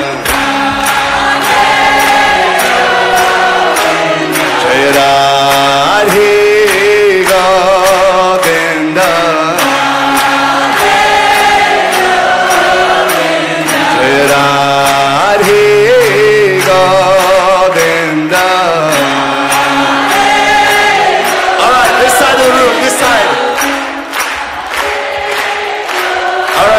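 Devotional Hindi bhajan in praise of Radha and Govinda: sung voices, with a chorus, over a steady percussion beat and bass line.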